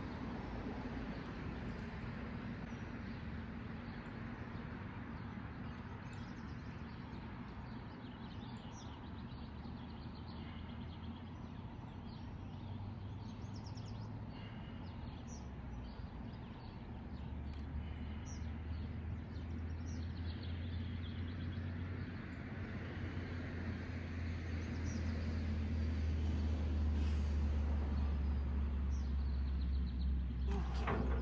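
Outdoor ambience: a steady low rumble that grows louder in the second half, with scattered faint bird chirps.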